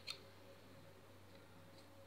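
Scissors closing once with a sharp snip just after the start while cutting fabric, then near silence with two faint clicks and a low steady hum.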